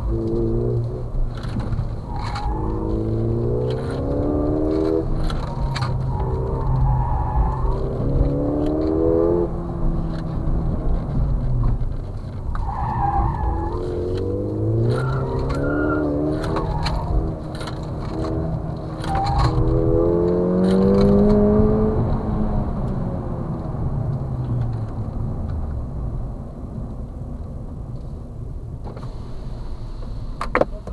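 Car engine heard from inside the cabin during a cone slalom run, revving up again and again in rising pulls and dropping back between them, with brief tyre squeals and rattling clicks from the cabin.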